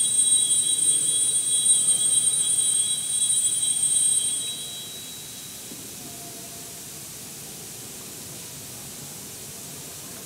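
Small altar bell ringing at the elevation of the consecrated host, marking the consecration. A high, sustained ringing that fades out about four to five seconds in, leaving the quiet hush of the church.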